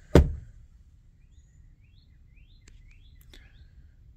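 A hinged storage-compartment panel knocks shut once, sharply, just after the start. Then faint birds chirp a series of short rising calls.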